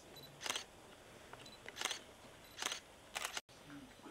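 Press photographers' camera shutters clicking: four separate shots at irregular spacing, each a short, sharp click.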